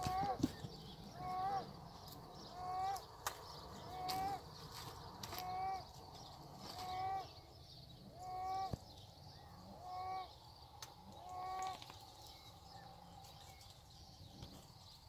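An animal calling the same short call over and over, evenly spaced about every second and a half, nine times, with a few faint clicks between calls.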